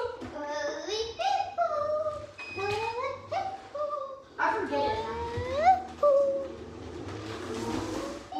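Children's voices making wordless vocal sounds and short calls, with a long rising squeal about five seconds in, then a fainter hiss near the end.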